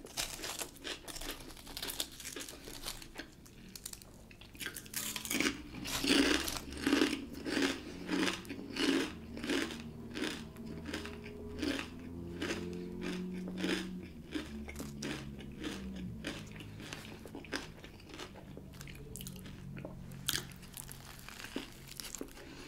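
Close-miked chewing and crunching of a mouthful of kettle-cooked jalapeño potato chips and a toasted sub sandwich, in a steady rhythm of about two chews a second that is loudest in the middle stretch.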